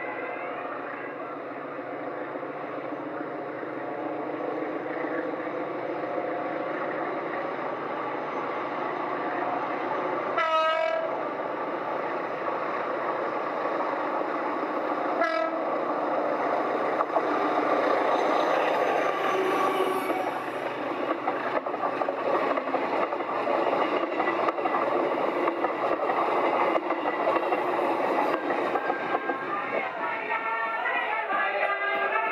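A train running along the line, growing steadily louder as it approaches, with wheels on rails. It sounds two short warning blasts, about ten seconds in and again about five seconds later.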